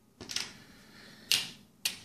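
Small wooden game pieces clicking against each other and the board as the worker discs are gathered off it: a few short clicks, the loudest a little past halfway.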